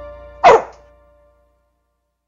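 Music fading out, then a single short dog bark about half a second in, the loudest sound, falling in pitch.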